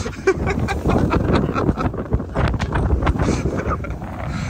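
People laughing and calling out in short bursts, over wind buffeting the microphone.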